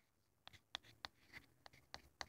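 Faint ticks and scratches of a stick of chalk writing on a chalkboard-surfaced toy horse, about six short strokes in a row.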